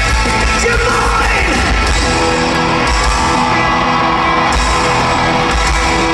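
A rock band playing live in a large arena, heard from within the crowd: loud, continuous music with drums, singing and crowd yelling.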